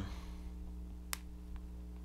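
A single sharp click as a Lightning cable's plug seats in an iPhone's charging port, followed by a fainter tick, over a faint steady hum; the phone starts charging.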